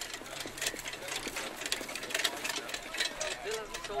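A harness horse pulling a sulky goes past close by: a quick, irregular clatter of hoofbeats and the rattle of the sulky and harness.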